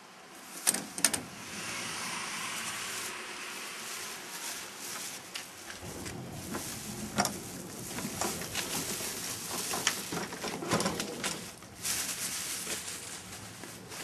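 Handling noise: equipment and its packaging rustling and knocking as the gear is taken out of the box and set up. There are two sharp clicks in the first second, and the knocks grow more frequent in the second half.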